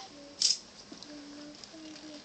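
Soft, faint young children's voices in a small room. A brief sharp hiss about half a second in is the loudest sound.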